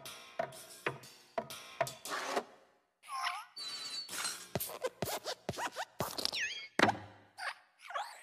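Animated Pixar desk lamp (Luxo Jr.) sound effects: a run of springy hops at about two a second, squeaky metal-spring creaks that glide in pitch, and the loudest thump near the end as it squashes the letter I.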